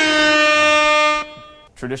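An edited-in electronic sound effect: a loud, buzzy, horn-like held note with many overtones. It stops abruptly a little over a second in and its tail fades quickly, and a man's voice follows near the end.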